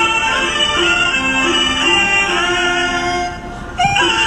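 Chinese opera singing over instrumental accompaniment, the voice gliding between held notes. The sound drops briefly just before the end, then comes back in on a rising note.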